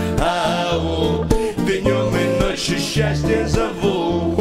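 Russian chanson song: a guitar-led passage over a steady, repeating bass line.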